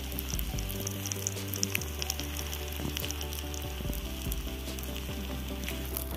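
Masala-coated red snapper (chembali) frying in hot oil in a cast-iron pan: a steady sizzle with many small crackles and spits of the oil.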